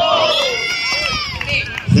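Several people shouting and cheering together after a volleyball rally, high-pitched yells that rise and fall for about a second and a half.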